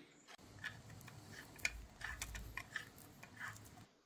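Faint, scattered small clicks and taps of hands handling an e-bike's plastic headlight and metal mounting bracket while fitting the light.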